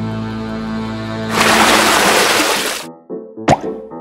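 Background music with edited-in sound effects: a loud rushing whoosh lasting over a second, starting about a second and a half in, and a short sharp swoop near the end as the scene changes.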